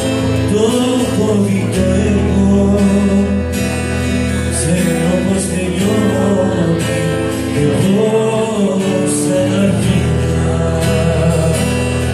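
Live acoustic music: a steel-string acoustic guitar strummed under a male singer's voice sung into a microphone.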